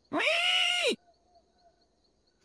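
A cartoon character's short, high-pitched vocal cry, rising then held for under a second before it cuts off.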